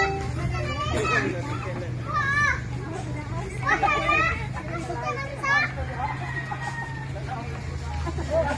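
Several people talking and calling out excitedly in short, lively bursts, some voices high-pitched, over a low steady hum.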